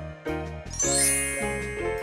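Children's background music with a bright, tinkling chime sound effect that rings out a little before halfway and fades away, marking the change from one alphabet card to the next.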